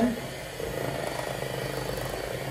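Electric hand mixer running steadily, its beaters churning a cream cheese and mango puree cheesecake filling in a metal mixing bowl.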